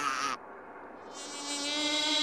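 A steady buzzing electronic hum from a long chain of linked megaphones switched on, rising in loudness from about a second in.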